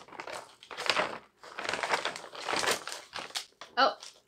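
Plastic HBAF snack multipack bag crinkling in irregular spurts as a hand rummages inside it and pulls out a small packet.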